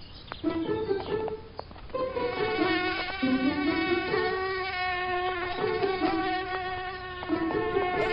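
Animated bee buzzing: a steady, many-toned buzz that sets in about two seconds in and holds almost to the end.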